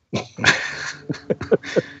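Laughter: breathy, wheezing bursts with a few short voiced laughs in the second half.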